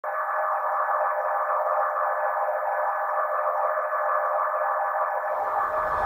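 Steady synthesized drone of several held mid-range tones with a fluttering, warbling texture. About five seconds in, a low bass comes in as music begins.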